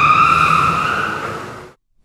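A train whistle gives one long, high steady blast over a hiss. It fades away and cuts off shortly before the end.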